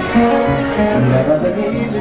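Acoustic guitar played live as song accompaniment, the music running at an even level.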